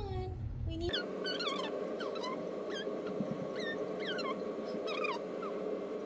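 Repeated short, high-pitched falling cries from an animal, several a second, over a steady background hum.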